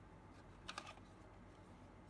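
Hard plastic case of a clock radio clicking lightly as it is handled and turned over, a quick cluster of clicks a little under a second in, otherwise near silence.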